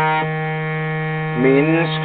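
Harmonium reeds holding a steady low drone chord, with a higher note dropping out about a quarter second in. A man's voice begins reciting over the drone near the end.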